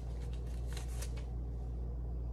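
Steady low hum, with a few faint, brief rustles about a second in.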